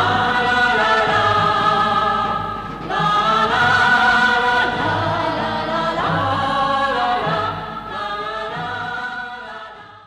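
A choir singing long held notes in several phrases, fading out at the end.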